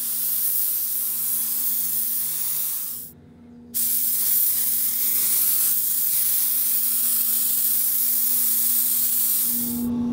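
DeVilbiss smart-repair spray gun hissing steadily as it dusts paint on at low air pressure. The hiss cuts out for about half a second around three seconds in, then resumes until just before the end, over a faint steady hum.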